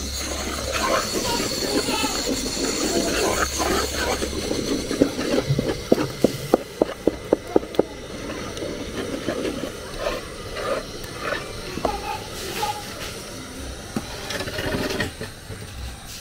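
Long wooden stirring stick turning thick plantain fufu dough in an aluminium pot, with a quick run of knocks against the dough and pot, about three a second, from about five to eight seconds in.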